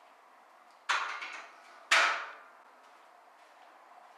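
Two sharp metal clanks about a second apart, each ringing briefly: an iron weight plate being loaded onto a barbell.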